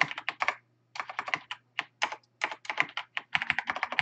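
Fast typing on a computer keyboard: quick runs of keystrokes, with a brief pause about half a second in.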